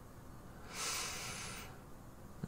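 A man's long exhale, a sigh lasting about a second, starting just under a second in.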